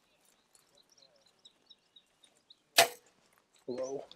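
A single compound bow shot about three quarters of the way in: one sharp snap as the string is released, followed by a short ring.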